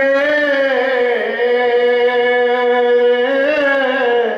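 A man's voice singing unaccompanied into a microphone, a devotional recitation drawn out in one long held note. The note wavers, dipping about a second in and rising again near the end.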